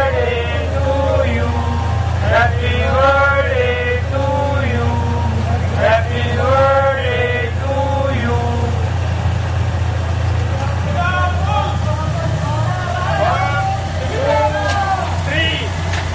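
Men's voices singing together in held, drawn-out notes, over the steady low hum of an idling motorcycle engine.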